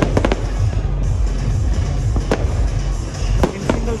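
Aerial fireworks exploding: a quick cluster of sharp bangs right at the start, another bang about two seconds in and two more near the end, over loud music with a heavy low beat.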